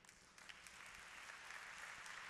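Audience applauding faintly, the clapping swelling about half a second in and then holding steady.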